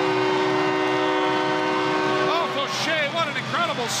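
Arena goal horn sounding one steady, many-toned blast that signals a home-team goal, cutting off a little over halfway through. A voice follows.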